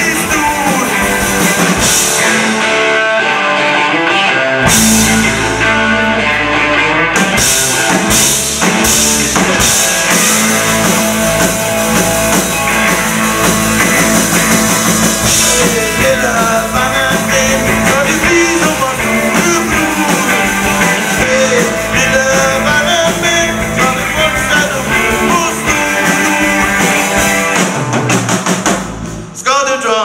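Live rock band playing: electric guitar, bass and drum kit, with a man singing into the microphone. The music drops out briefly near the end before the band comes back in.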